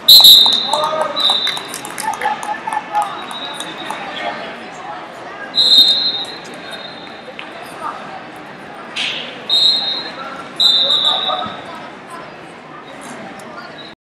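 Referee's whistle blowing a loud blast right at the start, the signal that the match has ended on a fall, followed by four more short whistle blasts over the hall. Crowd voices and shouts carry on under the whistles.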